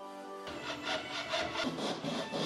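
Background music with a steady beat, over a rasping sound of sandpaper rubbed on PVC pipe.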